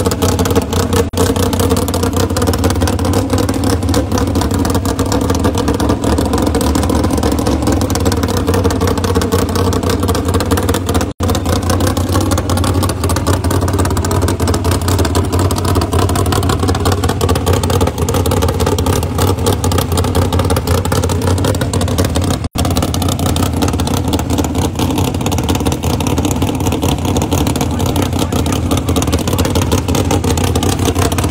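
Dodge Demon drag car's engine running loudly and steadily at a high idle, its pitch swelling slightly now and then. The sound drops out for an instant twice.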